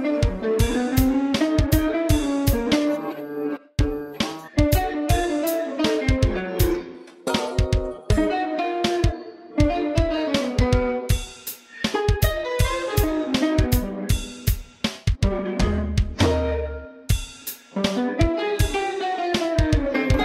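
Jazz-funk instrumental: an electric guitar plays gliding, bending melodic lines over a steady drum groove, with a brief break about four seconds in.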